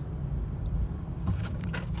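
Road and engine rumble of a moving car heard from inside the cabin, with a few light clicks about a second and a half in.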